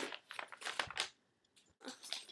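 Crinkling and rustling of items being handled and pulled out of a purse: several quick bursts in the first second, a brief pause, then more rustling near the end.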